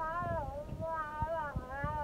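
A young child's high voice held in one long wavering sound, the pitch sliding up and down.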